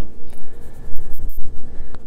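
Cardboard packaging being handled and rubbed close to the microphone, a dry scratching with low handling bumps and a few short scrapes around the middle.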